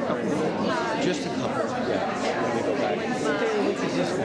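Overlapping chatter of several people talking at once in a large hall, no single voice standing out.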